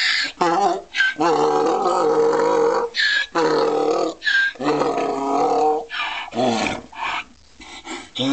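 Donkey braying: a run of hee-haws, a short high squeak on each in-breath between long out-breath calls, fading out near the end.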